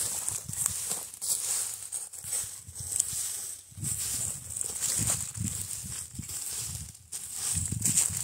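Long-handled tined hook scraping and dragging dry grass and straw over the soil in irregular strokes, with dry rustling, over a steady high-pitched hiss.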